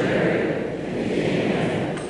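A congregation speaking a prayer together in unison, the many voices blurred into one continuous murmur by the echo of the church.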